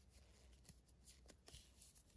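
Near silence, with faint soft rustling and a few small clicks of fingers handling a 1:12 scale action figure's thin cloth jumpsuit as it is pulled back up over the figure.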